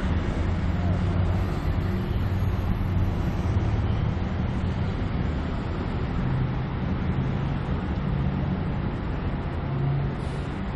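Steady city traffic noise with a low engine hum.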